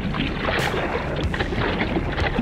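Seawater splashing and sloshing around a surfboard as a surfer paddles it lying prone, hands stroking the water, heard up close at the waterline in a run of irregular splashes.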